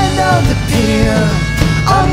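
A Celtic rock band playing a song live: a wavering melody line over guitar and a full rhythm section.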